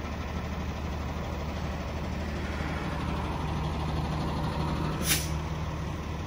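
Hino hooklift truck's diesel engine running steadily as its hydraulic hook arm moves over a dumpster overloaded with dirt, far too heavy for the truck to lift. There is a short sharp hiss about five seconds in.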